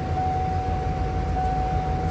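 Steady low rumble of a car engine idling, with a steady high-pitched whine that holds one pitch throughout.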